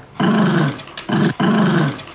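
A dog growling: three growls in a row, the middle one short.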